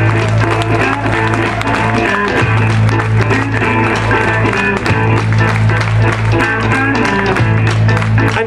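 Live blues band playing a steady groove: electric and acoustic guitars over drums, with a regular beat.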